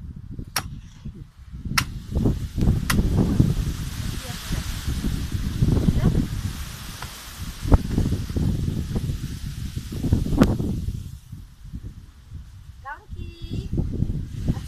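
A hand tool hacking and scraping at fibrous palm-tree root stumps in sandy soil: irregular rough scraping with several sharp knocks, which dies down about three seconds before the end.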